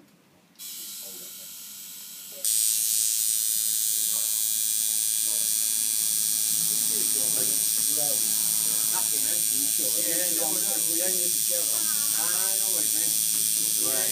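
Electric tattoo machine buzzing steadily as it needles the skin of a wrist. It starts faintly about half a second in and runs louder and even from about two and a half seconds in.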